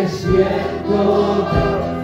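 Congregation singing a Spanish worship song together, holding long notes over an amplified band accompaniment with low bass notes.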